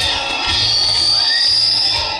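Music with a steady low beat, over a crowd cheering and shouting, with a long high tone held through most of it.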